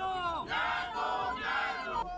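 A crowd of men shouting slogans in long, held calls.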